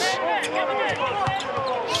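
Basketball dribbled on a hardwood court during live play, with a commentator's voice over it.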